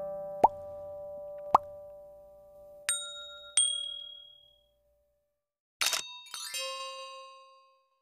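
End-screen animation sound effects: two short rising pops, then two bright dings. About six seconds in come a brief noisy burst and a quick cascade of tinkling chimes that fades away.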